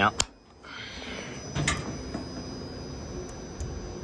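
Weatherproof isolator switch on an air-conditioning outdoor unit turned back on with a sharp click, reapplying power to the unit; a second click follows about a second and a half later, over steady outdoor background noise.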